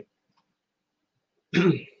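Near silence for about a second and a half, then one short vocal sound from a man near the end.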